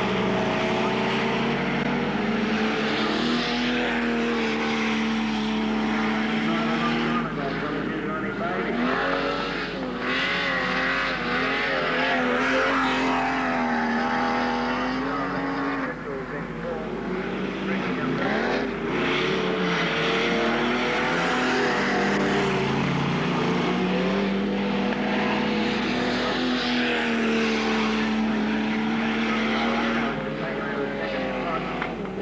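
Saloon race car engines running hard on a dirt oval, their pitch rising and falling as the cars accelerate out of the turns and lift into them.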